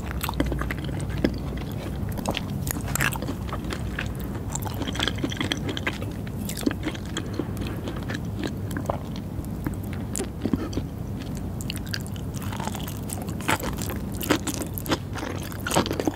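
Close-miked chewing of raw-fish sashimi and nigiri sushi: soft, wet mouth clicks and smacks, irregular and many, done loudly on purpose.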